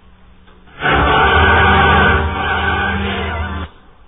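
A choir sings one loud, sustained chord for about three seconds, starting about a second in and breaking off sharply. The chant is sung in Slavonic and comes from a 1920s recording taped off the radio, so the sound is dull and narrow.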